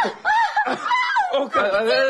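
A woman laughing in short, high-pitched peals.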